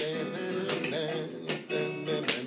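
Acoustic guitar strummed in chords, a stroke about every three-quarters of a second, with a man singing along.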